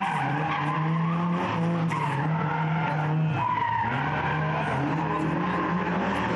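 Autoslalom cars running hard through a cone course: an engine held at high revs, dipping briefly about halfway and then picking up again, with tyres squealing and skidding on asphalt.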